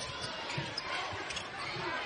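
Basketball dribbled on a hardwood court, a bounce roughly every half second, over the murmur of an arena crowd.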